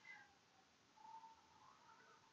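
Near silence: room tone, with a faint, brief wavering high call about a second in.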